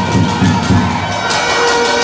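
Large crowd in a hall cheering and shouting, swelling in the second half.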